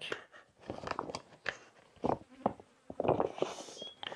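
A soft, collapsible HydraPak one-litre water bottle being rolled up and squeezed in the hands, giving irregular crinkling and rustling. An insect is buzzing close by.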